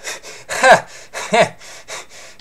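A man laughing in two short breathy bursts, the first the louder.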